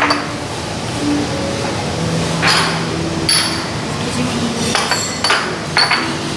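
Small ceramic dishes and glasses clinking on a restaurant table: several separate sharp clinks, each with a short high ring.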